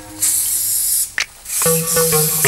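Aerosol spray paint cans hissing onto water in two bursts, the second starting about a second and a half in, with a short click in the gap between them.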